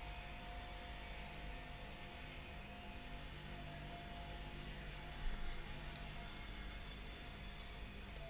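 Quiet room tone: a faint steady hum and hiss with a thin steady high tone running through it, and one soft brief sound about five seconds in.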